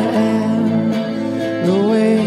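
A man singing over a strummed electric guitar. His voice holds a low note, then slides upward near the end.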